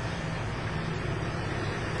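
Car engine idling steadily with a low hum.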